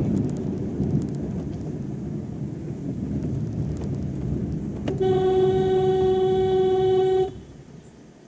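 Low road and engine rumble inside a moving car, then a vehicle horn sounds one long steady blast of about two seconds, starting about five seconds in. The horn cuts off suddenly and the rumble drops away with it.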